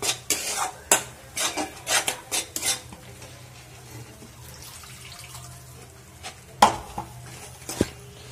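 Metal spatula scraping and clanking against a metal kadhai as a thick gravy is stirred: a quick run of scrapes over the first three seconds, a quieter pause, then one loud clank about six and a half seconds in and a lighter one near the end.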